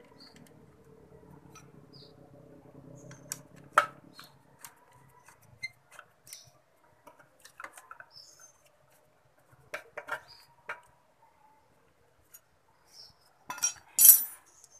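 Scattered small metallic clicks and clinks of a steel wire cable and a washer being handled and hooked onto a motorcycle's kick-start pedal, in irregular taps with a few sharper knocks.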